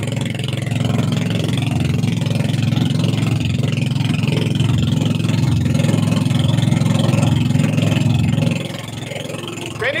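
The engine of a motorized outrigger boat (bangka) running steadily under way, a low drone with water and wind hiss over it. It drops in level near the end.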